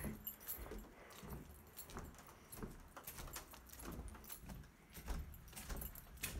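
Faint footsteps on wooden porch boards, soft irregular knocks with scattered light clicks and clinks.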